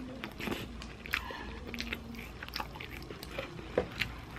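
Close-miked chewing of a mouthful of sesame-seed burger: many soft mouth clicks, with a sharper click about a second in and another near the end.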